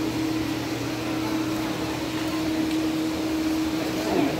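A steady mechanical hum with one constant low tone, over an even background noise.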